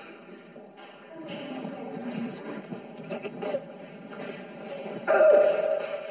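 Indistinct voices, with one voice rising to a loud call about five seconds in.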